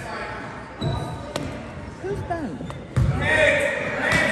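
Basketball bouncing on a hardwood gym floor, two low thumps about two seconds apart, echoing in the large hall. Voices call out around it and grow louder near the end.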